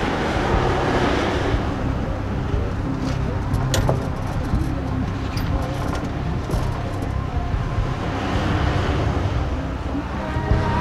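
Ford Explorer SUV driving slowly past, a steady sound of engine and tyres on asphalt, with a sharp click about four seconds in.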